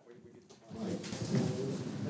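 Faint, muffled off-microphone talk and room noise, starting after a brief near-silence under a second in.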